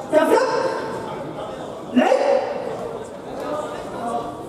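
Two short, loud shouts about two seconds apart, each trailing off in the echo of a large sports hall.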